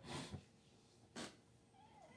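Near silence, broken by two brief, faint, breathy noises: one right at the start and one a little past a second in.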